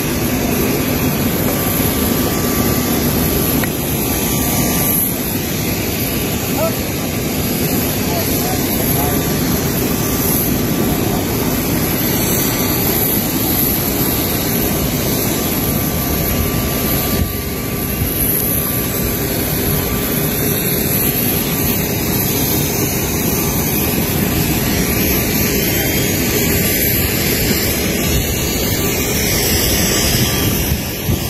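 Aircraft turbine engine running steadily: a loud, even rush with a thin high whine held over it.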